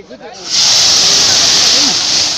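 Fireball erupting from a burning pot in a fire-training demonstration: a sudden, loud, steady hissing rush of flame that starts about half a second in.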